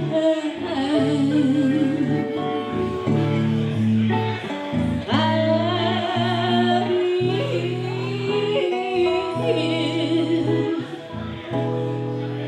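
Live blues instrumental passage: a harmonica plays warbling trills and bent notes, with a sharp rising glide about five seconds in, over strummed electric archtop guitar chords.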